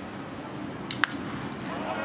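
Sharp crack of a wooden bat hitting a pitched baseball, about halfway through, over the low ambience of a sparsely filled ballpark.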